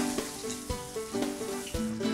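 Burger patties sizzling on a hot grill grate, over background music playing a simple melody.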